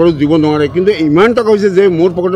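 Only speech: a man talking continuously.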